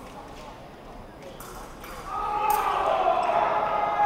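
Fencers' footwork knocking on the piste: a few sharp stamps in the first half. From about halfway, loud shouting voices fill the hall.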